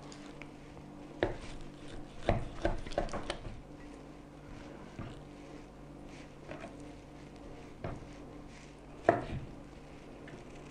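Knife cutting raw beef silverside into chunks on a wooden chopping board: scattered soft knocks of the blade on the board, with pieces of meat dropped into glass canning jars. The loudest knock comes near the end.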